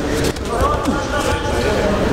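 Several voices calling out in a large, echoing sports hall during a judo bout, over a low rumble with a few dull thuds.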